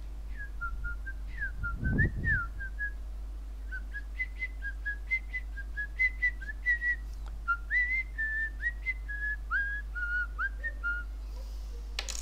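A person whistling a tune of short notes and little pitch slides, with a low thump about two seconds in, over a steady low electrical hum.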